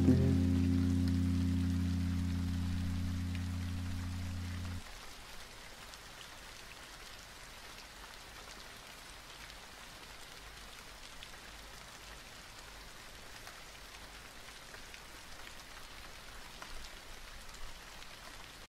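A held low chord of the muffled, slowed song fades and stops abruptly about five seconds in, leaving steady rain falling on a hard surface.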